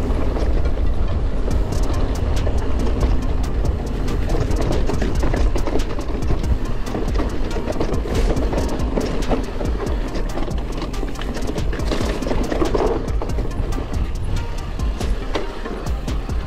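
Background music over the noise of a mountain bike descending a rocky trail: constant rattling and clattering of the bike over stones, with wind rush and rumble on the camera's microphone.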